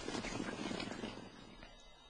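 A field of racehorses galloping on turf just after breaking from the starting stalls, their hooves drumming in a dense rapid patter that fades as the horses pull away.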